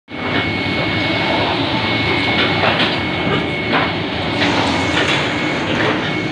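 Printing press running in a print shop: a steady mechanical rumble with a faint high whine and irregular clacks from the machine's moving parts.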